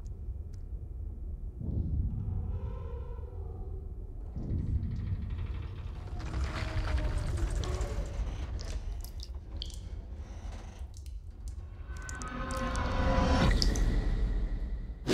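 Deep continuous rumble with long, drawn-out metallic groans swelling three times, the last and loudest near the end, and scattered drip-like ticks. This is the sound of a deep-sea station's structure straining under water pressure as it begins to leak.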